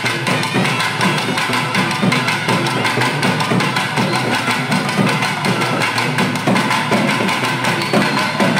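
Tamil temple drum ensemble playing: rope-braced barrel drums beaten with sticks in a fast, unbroken rhythm, under steady held notes from a wind instrument.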